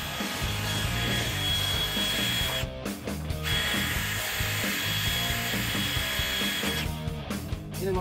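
DeWalt 20V cordless drill running with a smaller-diameter bit, drilling out a hole in a steel trailer-jack mount. It is a steady whine that breaks off briefly about three seconds in, resumes, then stops near the end.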